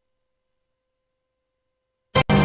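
Near silence: a gap in the broadcast audio.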